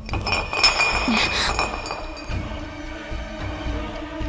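A glass bottle clinking and rattling on a hard floor for about the first two seconds, the glass ringing, over background film music.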